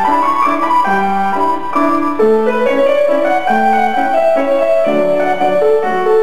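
Acoustic piano playing a sung piece's introduction, a steady succession of chords and melody notes before the voice enters.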